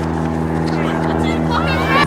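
A steady low mechanical hum, with voices calling out faintly near the end.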